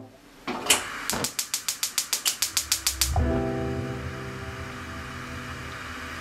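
Gas stove burner igniter clicking rapidly, about seven clicks a second for a little over two seconds, then the gas catches and the burner settles into a steady low flame sound.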